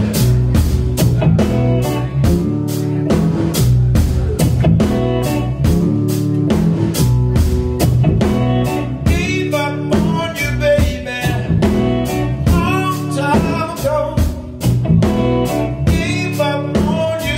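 Live blues band playing: electric guitar, electric bass and drum kit with a steady beat. About nine seconds in, a lead line with bending notes comes in over the band.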